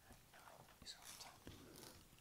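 Near silence: room tone with faint whispering.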